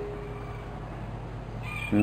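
A pause in a man's talk, filled only with the steady hiss and low hum of an old tape recording, with a faint high tone near the end.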